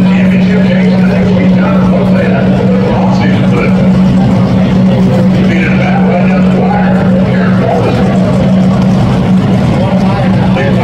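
A loud, steady machine drone holding one pitch, with a track public-address announcer's voice echoing over it.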